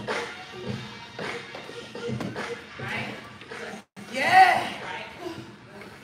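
Music with vocals playing throughout; the sound cuts out completely for a moment a little before four seconds in.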